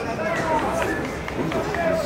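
Raised voices calling and shouting across a soccer pitch during play, several short calls over the open-air background.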